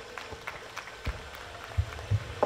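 Sparse, scattered hand claps from an audience at the end of a song, with a low thump near the end.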